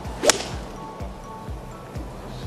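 A golf club whooshes through the downswing and strikes the ball with one sharp crack about a quarter of a second in, over background music with a steady beat.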